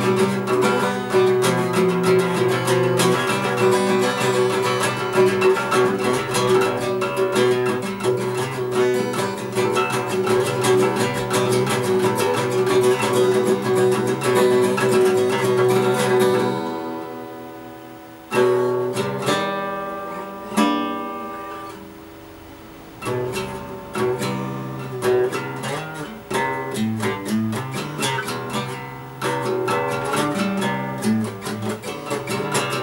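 Steel-string acoustic guitar strummed fast and steadily. Just past halfway the strumming stops, and two single chords ring out and fade away. The playing then picks up again as slower, sparser plucked chords and notes.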